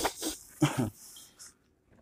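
A woman drinking water from a plastic bottle: a few short breathy gulps and breaths, about half a second apart, dying away before the end.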